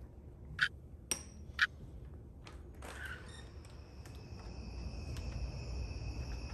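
A door knob and latch clicking three times as a front door is unlocked and opened. From about halfway through, night insects trilling steadily outside.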